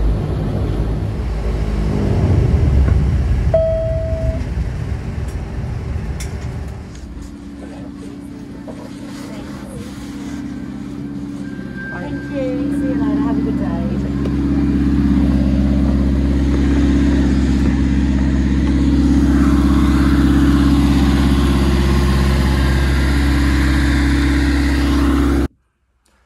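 Dash 8 Q300 turboprop engine noise, loudest in the first few seconds, then settling into a steady low drone on the apron. A brief single tone sounds about four seconds in, and voices are faintly heard.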